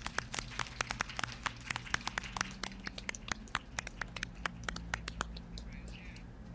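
Light applause from a few people clapping by hand, a thin stream of irregular claps that dies away about five seconds in.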